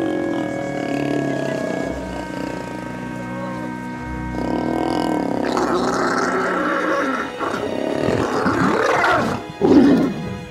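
Asiatic lions vocalizing while mating, with rough growls and snarls building in the second half and loudest just before the end, over background music.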